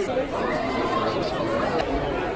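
Indistinct chatter of many voices, with no single voice standing out.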